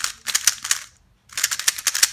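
A 3x3 speedcube's plastic layers being turned fast by hand: a quick run of sharp clacks, a pause of about half a second, then another quick run of clacks.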